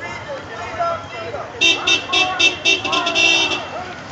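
A car horn tooting in a quick string of short beeps that ends in one longer honk, starting about a second and a half in, over people talking.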